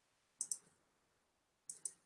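Faint computer mouse clicks: a quick pair about half a second in, then another short cluster of clicks near the end.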